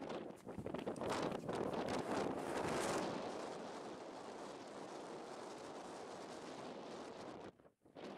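Wind buffeting the camera microphone in gusts, loudest in the first three seconds, then a steadier rush that breaks off briefly near the end.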